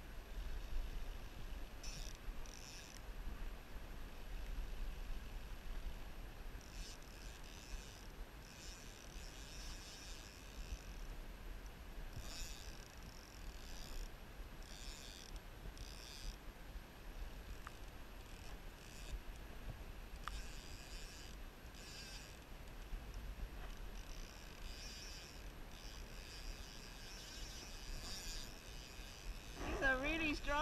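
Fly reel's clicker ticking in short, irregular spurts as line moves on the spool while a steelhead is played on a spey rod, over a steady low rumble.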